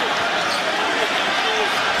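Basketball arena crowd noise, a steady din of many voices and court sounds heard through the radio broadcast's crowd microphone.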